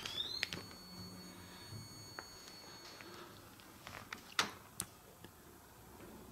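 A faint, high-pitched electronic tone from a small device laid on wooden floorboards. It rises in pitch, holds steady for about three seconds, then fades. Scattered faint clicks follow, with two sharper knocks near the end.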